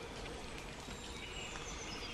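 Faint outdoor background noise with thin, distant bird calls.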